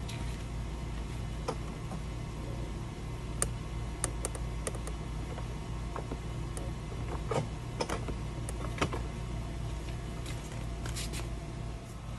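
Irregular light clicks and taps from a self-propelled lawn mower's drive linkage as its drive cable is pulled from the handle, over a steady low hum. The engine is not running.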